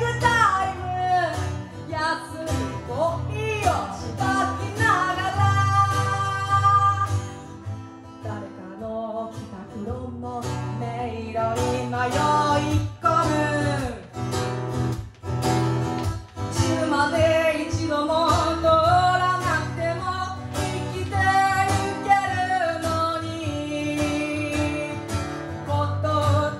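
A woman singing a song to her own strummed acoustic guitar, performed live.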